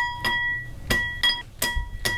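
Wet pumpkin seeds dropped a few at a time into a ceramic bowl, about six clinks in two seconds, each leaving the bowl ringing with a short bell-like tone. It sounds like being at a casino.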